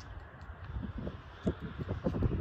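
Footsteps on tarmac as the camera-holder walks, over a faint low outdoor rumble, with a sharper tap about one and a half seconds in.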